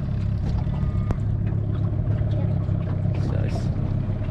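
Small outboard motor on an aluminium tinny running steadily as the boat moves slowly over the water, with a light click about a second in.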